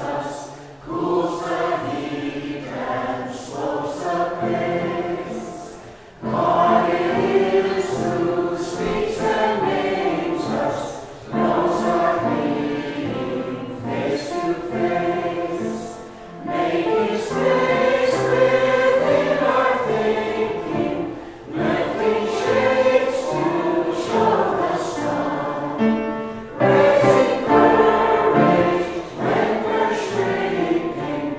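A small mixed choir of women's and men's voices singing a hymn in phrases of a few seconds, with short breaths between the lines.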